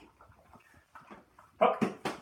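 A young dog whimpering in short, faint whines, then a short, much louder vocal sound near the end.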